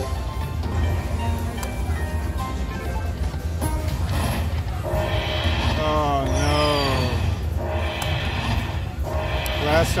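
Video slot machine's electronic spin sounds and music, with a run of chiming, gliding tones from about five seconds in as fireball bonus coin symbols land on the reels, over a steady low hum and background voices of the casino floor.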